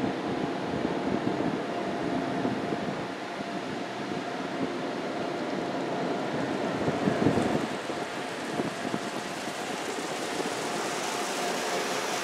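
Car wash air dryer blowers running, heard from inside the car: a steady rush of blown air with a faint steady whine, swelling briefly about seven seconds in.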